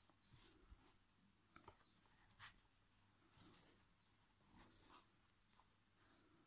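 Near silence, broken by a few faint, short rustles of yarn and crocheted fabric being handled while a yarn needle sews a fin onto the body.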